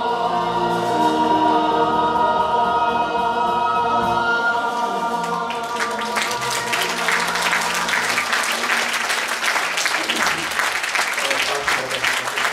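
A group of voices and instruments holds a final chord that fades out about five seconds in, and audience applause swells up and carries on to the end.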